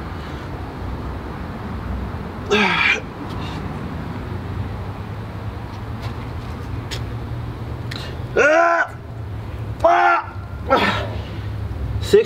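A man's short vocal grunts and exclamations with falling pitch, one about two and a half seconds in and three close together near the end, the sounds of straining through a set of push-ups, over a steady low hum.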